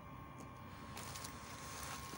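Faint rustling of a clear plastic packing bag being handled inside a cardboard box, starting about a second in.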